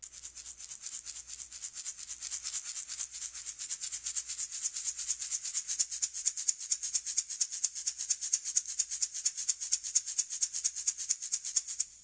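Sampled shaker from 8Dio's Aura Studio Percussion, played as a groove-sampled Aura loop rather than single multi-samples: a fast, even run of bright shaking strokes that swells a little in loudness.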